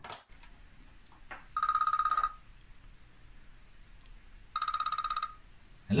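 Corded landline telephone ringing twice: two short, rapidly trilling electronic rings about three seconds apart, an incoming call.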